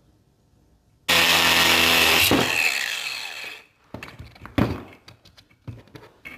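DeWalt cordless angle grinder started about a second in, running loud for about a second, then winding down as it is switched off. A few sharp metal clanks follow as it is set down on the bench.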